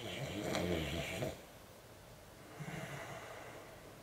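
A person snoring: one snore over the first second or so, then a fainter second snore a little past the middle.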